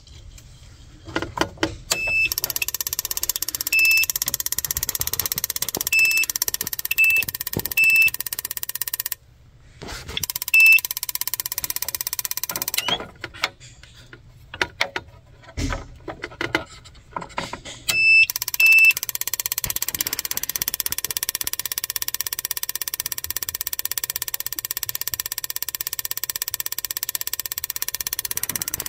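Two spark plugs firing in a bench spark plug tester: a fast, even snapping buzz of high-voltage sparks that stops and restarts twice. Short electronic beeps come in several times over it.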